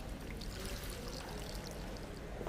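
Water pouring from a plastic watering can onto the soil of a potted plant, a short pour that starts about half a second in.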